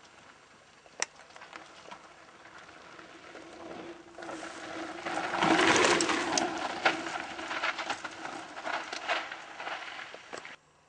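Mountain bike rolling down a rough dirt trail: a rushing noise from the tyres, with clattering knocks over bumps. It swells to its loudest about halfway through and eases toward the end.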